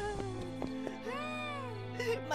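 Soft, sustained orchestral music under a woman's crying: one long wavering wail that rises and falls about halfway through, a sob of despair.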